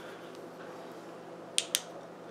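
Two quick sharp clicks close together, about three-quarters of the way through, from a small flashlight being handled. Otherwise faint room tone.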